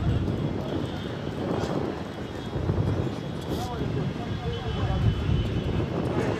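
Outdoor football-pitch ambience: a steady low rumble with faint, distant voices of players calling on the field.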